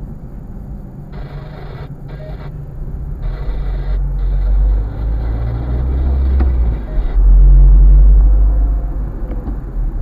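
Low rumble of a car driving in slow city traffic, heard inside the cabin. It grows louder from about a third of the way in and is loudest shortly after two-thirds through, then eases.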